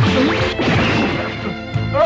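Dramatic background music under animated-action fight sound effects: a loud crashing hit at the start and another near the end, with swooping effects between them.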